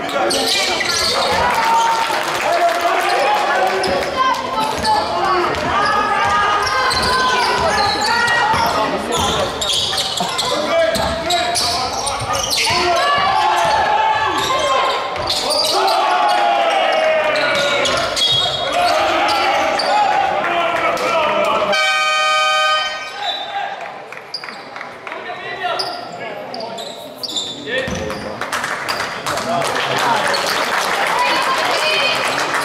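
Basketball game in a sports hall: a ball bouncing on the wooden court under voices calling and shouting. About two-thirds of the way through, a scoreboard buzzer sounds for about a second, and the hall goes quieter after it.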